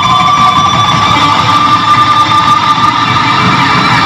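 Electric guitar solo played live at high volume. One high note is held for about three seconds and then gives way to new notes, over a dense low end.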